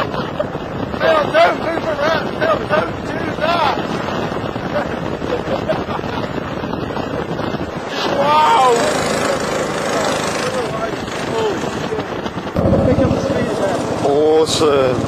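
Heavy wind buffeting the microphone over a small 100cc petrol go-kart engine running at speed, with whoops and laughter from the riders. The rumble grows louder near the end.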